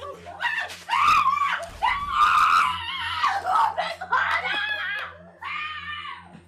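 A person screaming in a string of long, high-pitched cries with short breaks between them, over a steady low hum.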